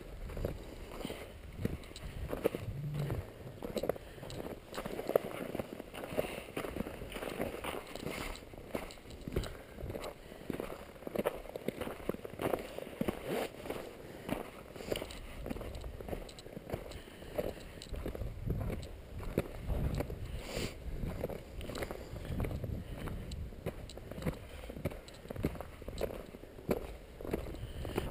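Footsteps crunching on a packed-snow road scattered with sand and grit: a continuous run of irregular crunches and scuffs.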